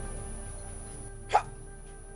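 Quiet background music with steady low notes. About a second and a half in, a single short exclaimed "Ha!" is heard.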